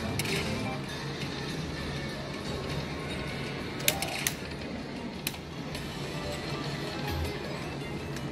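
Video slot machine playing its free-spin bonus music and reel-spin sounds over steady casino-floor din, with a few sharp clicks around the middle.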